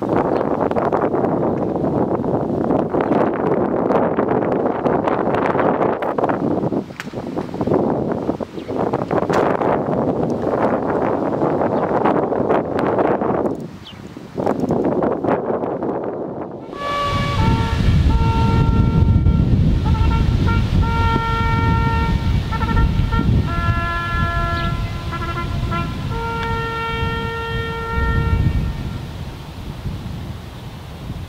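A military brass band playing a slow piece in long held chords, starting a little over halfway through. Before it, a rushing, gusting noise like wind on the microphone fills the first half.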